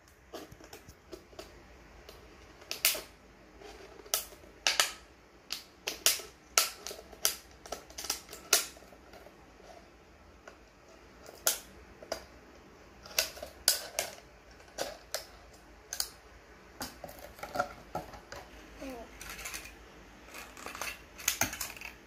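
Scissors cutting through a thin plastic water bottle: a long run of sharp, irregular snips and crackles of the plastic, with short pauses between bursts.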